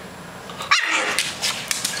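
French bulldog vocalizing: a sudden loud bark-like sound about three-quarters of a second in, falling in pitch, then continued rough vocalizing to the end.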